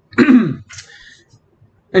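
A man clearing his throat once, briefly, with a falling pitch, followed by a faint breathy trail.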